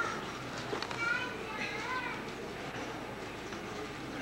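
Overlapping voices of people talking, with one higher voice rising and falling about one to two seconds in.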